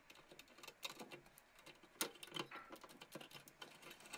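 Faint, scattered clicks and rustles of a PC power-supply cable's plastic connector and wires being handled and fitted onto a motherboard, the sharpest click about two seconds in.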